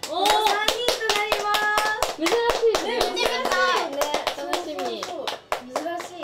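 Several people clapping quickly and repeatedly, with excited women's voices exclaiming over the claps, including one drawn-out high note about a second in.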